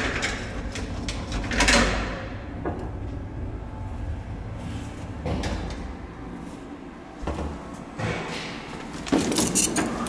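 A 1929 KONE traction lift car travelling in its shaft: a steady low rumble, broken by several clunks and rattles from the car and its folding metal scissor gate. The rumble sounds like machinery far below, and its machine room is in the basement.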